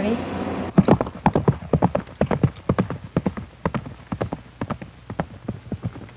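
A ridden horse's hooves clip-clopping on hard, dry dirt ground, a few hoofbeats a second, starting about a second in.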